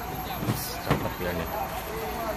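People talking in the background over a steady low engine rumble, with two sharp knocks about half a second and a second in.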